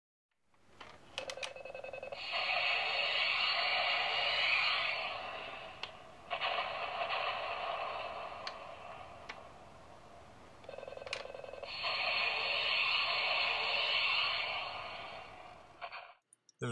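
Electronic sound effects from the Chap Mei True Heroes True Hawk toy jet's small built-in speaker, set off by squeezing the trigger on its handle. Three tinny bursts of a few seconds each; the second fades away.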